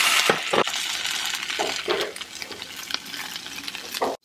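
Pieces of taro root (arbi) sizzling as they shallow-fry in hot oil in a pan, with a few sharp knocks among the sizzle. The sizzle is loudest at first and dies down over the next few seconds.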